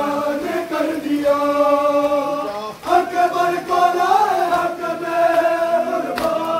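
Men's voices chanting a nauha, the Shia mourning lament of Muharram, in long drawn-out held phrases. One phrase ends and a new one begins about three seconds in, with a slap of a hand on a bare chest where the phrases meet.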